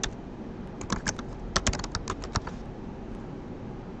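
Typing on a computer keyboard: a short, uneven run of keystrokes, a few about a second in and a quicker flurry around two seconds in.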